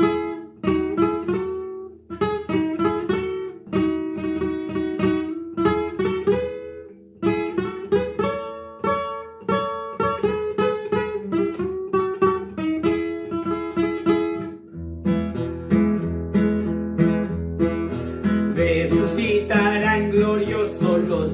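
Classical guitar played solo, picking a melody of single notes over bass notes. About fifteen seconds in it changes to a fuller, steadier accompaniment with heavier bass, and a man's voice starts singing near the end.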